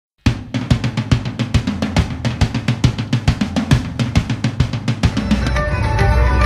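Drums beating a fast, even pattern of about seven strokes a second. Near the end they give way to the full band playing live music.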